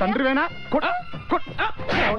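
A man's voice crying out in a string of short, wailing, yelp-like cries, with music beneath.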